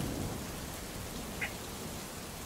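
Steady rain-like hiss from a rain ambience track, with one brief faint chirp about one and a half seconds in.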